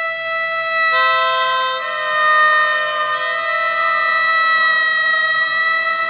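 Background music: held chords on a free-reed instrument such as a harmonica, shifting to a new chord every second or so.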